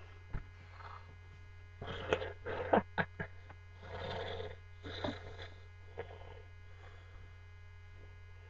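Steady electrical mains hum, with fabric rustling and a few short knocks and bumps as a sweatshirt is pulled on over the head, busiest about two to three seconds in.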